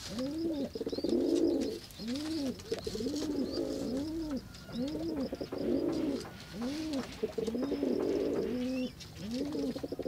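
Speckled pigeon cooing over and over: deep coos that rise and fall, about one a second, with a rough, rattling note between them. Faint high chirps of small birds run underneath.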